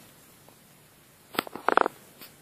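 A single sharp click a little past halfway, then a short, fast rattle of small clicks near the end, over faint room tone.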